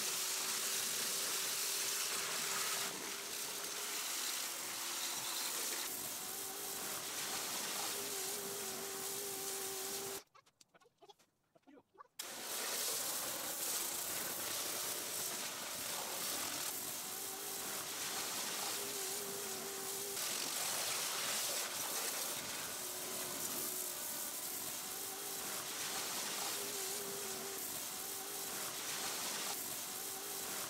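Pressure washer with a turbo nozzle spraying down a greasy engine bay: a steady hiss of water spray over a faint, wavering hum. It drops out for about two seconds about ten seconds in.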